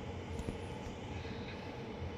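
Steady droning background noise with a low rumble and a faint steady hum, unchanging throughout.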